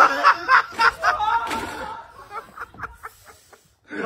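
A man laughing hard in short, breathy bursts that die away after about two seconds.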